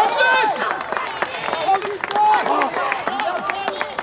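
Several people cheering and shouting together at once, just after a goal, with scattered claps among the voices.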